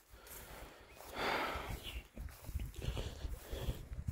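Footsteps and rustling through wet grass, irregular soft thumps, with a short rush of noise a little after a second in.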